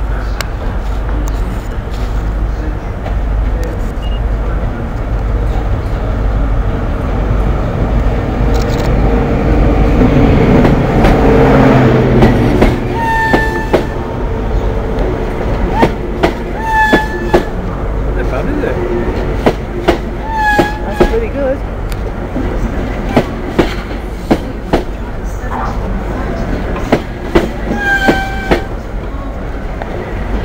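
First Great Western High Speed Train running along the platform: the diesel power car's engine rumble builds and peaks about ten to twelve seconds in. Then the Mark 3 coaches roll past with regular clicks of wheels over rail joints, often in pairs, and brief high tones every few seconds.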